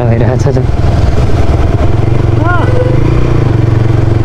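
TVS Raider 125's single-cylinder engine running steadily as the motorcycle is ridden, heard close up from the rider's position.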